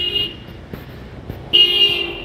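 Car horn honked twice: a short toot at the start and a louder, slightly longer one near the end.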